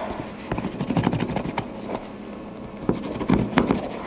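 Small plastic rolling pin rubbed and pressed over thin gum paste on a JEM scroll cutter, cutting the paste against the cutter's edges: irregular light knocks and scrapes in two spells, the loudest near the end.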